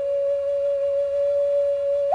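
Background music: a single long note held steady on a flute-like wind instrument.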